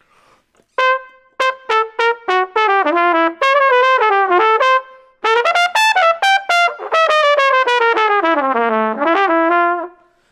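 Solo trumpet playing two short jazz phrases, each note started with a firm, separate attack: a 'pop' on the front of the note. The first phrase opens about a second in with a few detached notes and runs on into a quicker line. After a brief break the second phrase winds down to a low note near the end and climbs back up.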